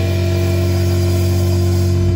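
Distorted electric guitar and Bass VI holding one sustained chord, ringing steadily with no drum hits.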